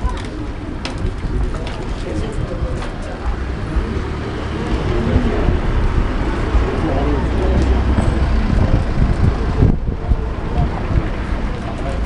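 A golden retriever and a whippet play-fighting: scuffling with irregular low grumbling play growls.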